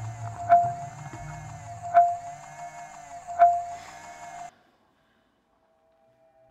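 Trailer sound design: a low drone with a ringing tone that pulses about every second and a half, four times, then cuts off suddenly, leaving silence.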